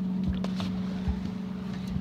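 A boat's motor humming steadily on one low tone, with a few short knocks as a landing net holding a bass is lifted over the side into the boat.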